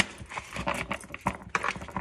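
A tarot deck being shuffled by hand, the cards riffled and knocked together in a run of irregular clicks and taps.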